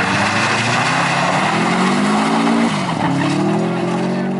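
Subaru Impreza rally car's flat-four engine revving hard as it slides on loose gravel, with tyres and gravel hissing throughout. The engine pitch climbs, drops sharply just under three seconds in as it shifts gear, then climbs again.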